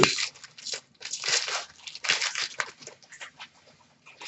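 Foil trading-card pack wrapper crinkling and crackling as it is torn open, in a run of irregular short crackles, with the cards handled as they come out.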